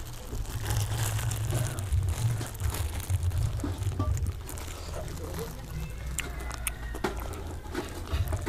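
Clear plastic bag of food crinkling and rustling as fingers work at it, with small crackles and eating noises as food is bitten from the bag. A steady low rumble runs underneath.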